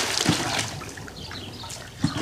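Swimming-pool water sloshing and trickling as a swimmer surfaces just after a jump, the noise easing off within the first second.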